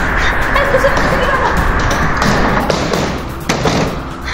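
Background music over a loud, dense rushing noise that thins out after about two seconds, with a sharp knock about three and a half seconds in.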